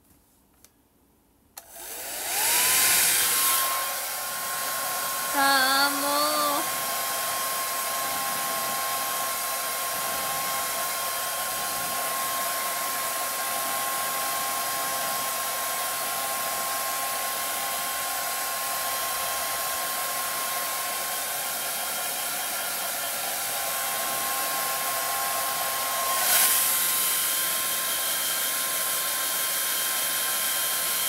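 Handheld hair dryer switched on about two seconds in, its motor spinning up and then running with a steady whine and rush of air. The sound swells briefly near the end as the dryer is moved, and a short voice is heard over it about six seconds in.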